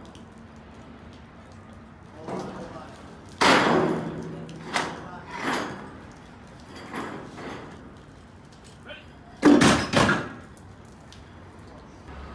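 Several sudden bangs and knocks from work on steel beams. The loudest comes about three and a half seconds in, with smaller ones after it and a loud pair near the end.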